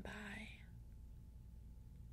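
A woman's soft-spoken final word, trailing off about half a second in, then near silence with a faint steady low hum of room tone.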